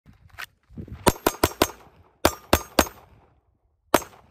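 Tisas Zigana PX9 Gen 3 9mm pistol firing in rapid strings: a fainter crack at the start, four quick shots, a pause, three more, and another just before the end.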